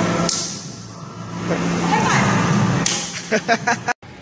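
One sharp hand-on-hand slap of a high five about a third of a second in, followed near the end by a person laughing in short bursts.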